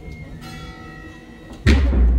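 Procession band playing a slow funeral march: faint held wind notes, then about a second and a half in a sudden loud bass drum and cymbal stroke with a long low boom.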